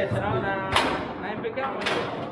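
Two sharp knocks from a foosball table, about a second apart, the first the louder, over steady chatter in a crowded hall.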